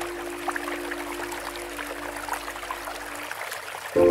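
Steady running water of a stream, trickling with small droplet ticks, under the last held note of slow relaxation music, which fades out about three seconds in.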